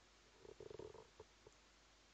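Near silence: room tone, with a faint short rasp about half a second in and two faint clicks after it.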